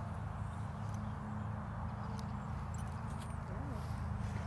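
Quiet outdoor background: a steady low hum with a few faint ticks around the middle.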